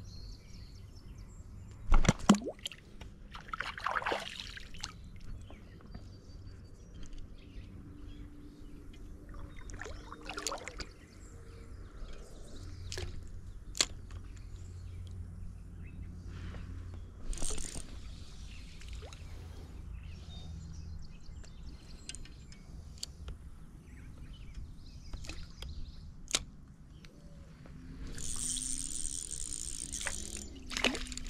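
Creek water lapping, with handling noise from a fishing rod and reel: a sharp knock about two seconds in and scattered clicks. Near the end come a couple of seconds of splashing as a hooked creek chub is reeled up out of the water.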